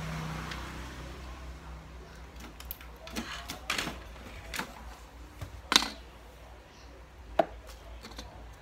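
A low hum dying away in the first second, then scattered clicks and knocks of small objects being handled and set down on a workbench, with two sharp clicks standing out, one a little past the middle and one near the end.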